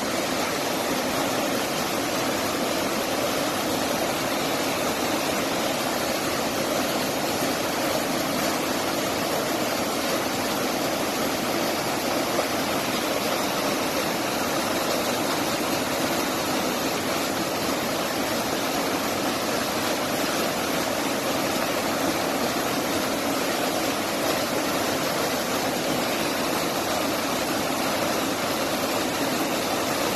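A small waterfall plunging into a rock pool: a steady, even rush of falling water that does not change.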